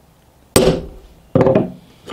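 A hardened steel punch hitting a hardened knife blade twice, each hit a sharp metallic click that rings briefly. The punch barely marks the blade, a sign the steel came through heat treatment fully hard.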